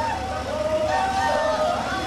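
A crowd of voices singing a hymn together, holding long notes that move step by step from one pitch to the next.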